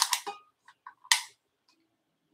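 A few faint, separate clicks and light taps, with a short hiss about a second in: small handling noises while a glass basket is being measured.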